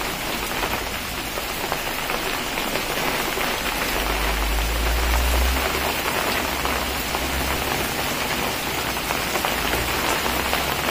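Very heavy rain pouring down steadily, a dense hiss of drops pattering on surfaces. A low rumble swells briefly about four to five seconds in.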